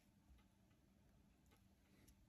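Near silence, with a few faint, irregular ticks as a microfibre cloth wipes an iPhone's glass screen.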